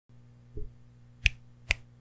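Two sharp finger snaps about half a second apart, after a soft low bump near the start.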